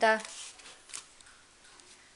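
A spoken word ends, then faint rustling handling noise with a soft click about a second in.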